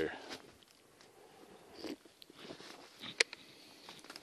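Faint handling of an opened beer can and its foam cozy: scattered rustles and small clicks, with one sharp click about three seconds in.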